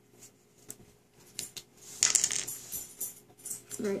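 Light clicks and rattles of a small plastic food-colouring bottle being handled, with a brief louder rustle about halfway through.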